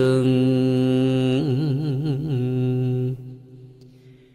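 A voice chanting a Vietnamese poem in the ngâm thơ style, holding one long wavering note that stops about three seconds in, then fades away.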